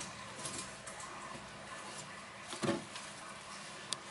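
Fat-tailed gerbils moving about in hay bedding: faint rustling and scratching, with a soft thump about two and a half seconds in and a short sharp click near the end.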